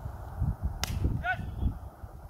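A single sharp crack of a cricket bat striking the ball, a little under a second in, followed by a brief high-pitched call.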